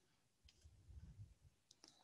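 Near silence: room tone with a few faint clicks, most of them near the end.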